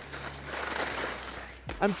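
Steady rushing hiss of skiing downhill: skis sliding over snow through a carved turn, mixed with air rushing past the microphone. A single spoken word comes in near the end.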